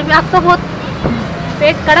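A woman speaking briefly, with a pause in which a steady low hum of motor traffic carries on underneath, and a single short click about a second in.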